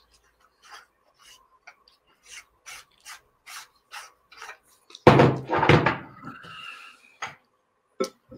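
A camera lens and its metal reversing ring being twisted apart by hand: a run of light clicks, two or three a second, then a louder rubbing clatter of handling about five seconds in.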